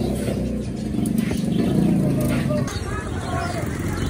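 A motor vehicle engine passing close by, loudest about two seconds in and fading soon after, over background voices.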